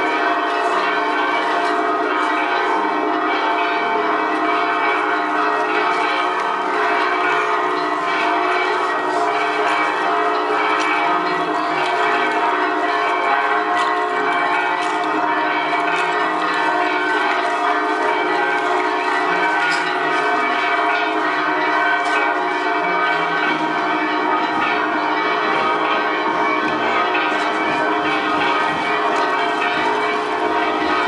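Church bells ringing on and on, many overlapping tones at an even loudness.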